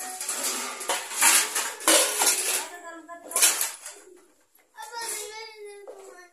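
A child talking, with clinks and scrapes of steel dishes as hands work flour dough in a steel bowl. There is a brief lull in the middle.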